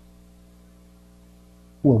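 Faint steady electrical mains hum, a low even drone, heard through a pause in speech; a man's voice comes back in near the end.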